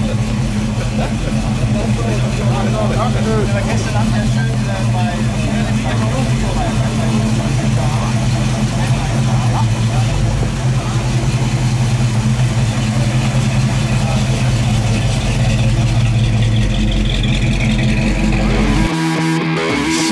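A car engine idling steadily under background talk from people nearby; the engine sound stops abruptly near the end.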